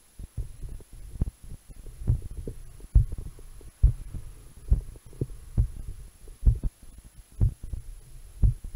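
A human heartbeat picked up through an acoustic stethoscope's diaphragm by a cheap lavalier microphone in its tubing: low, muffled thuds a little under one a second, with fainter beats between them.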